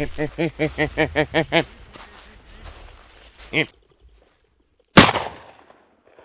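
A single shot from a black-powder percussion shotgun about five seconds in, the loudest sound, sharp with a short fading tail. Before it come a quick run of about eight short voiced calls and a brief laugh.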